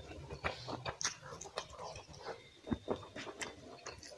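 Close-miked eating sounds: wet chewing and lip smacking, in irregular clicks and smacks, from a mouthful of rice and curry.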